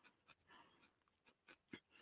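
Near silence, with faint, irregular scratchy pokes of a felting needle jabbing into wool.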